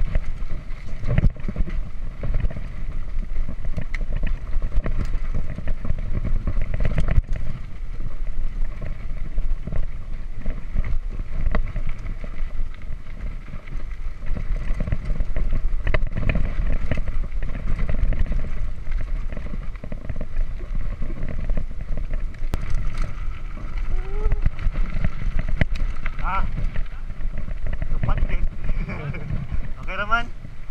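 Rumble and rattling clatter of a Giant Trance X3 mountain bike rolling over a rough, rocky dirt trail, with wind buffeting a chest-mounted camera's microphone. A few short wavering high-pitched sounds come near the end.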